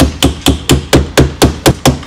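Claw hammer striking a red wedge tool set under the base of a rear-view mirror, about four quick, even taps a second. The taps drive the mirror base up and off its windshield mount.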